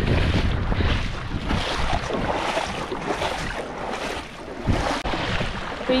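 Gusty wind buffeting the microphone, a rumbling rush that is heaviest in the first couple of seconds and then eases, with a brief thump near the end.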